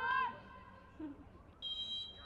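A referee's whistle blown once for kick-off: a short, high, steady blast starting near the end. Just before it, at the start, a player's high-pitched shout rises and falls.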